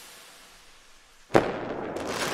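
Intro logo-reveal sound effect: a fading whoosh, then a sudden hit about a second and a half in, followed by a dense crackling noise like sparklers.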